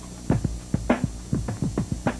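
Electronic music bed of deep, quick hits, each dropping sharply in pitch, about four a second in an uneven pattern, over a steady low hum.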